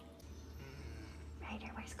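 A person's soft voice asking "Where's Coco?" near the end, over a steady low room hum.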